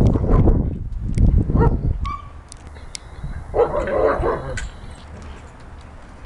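Dog barking in three loud bursts: one at the start, one about a second and a half in, and one about four seconds in.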